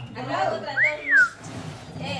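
A person whistles one rising-then-falling note, about half a second long, roughly a second in, over faint background chatter.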